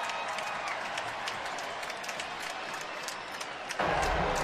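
Stadium crowd noise: steady cheering and clapping from the stands after a touchdown. A low rumble comes in shortly before the end.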